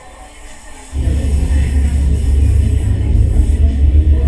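Simulated coffee-shop ambience with music, played as a noise-cancelling test: muffled at first, then about a second in it jumps much louder, with a heavy low rumble.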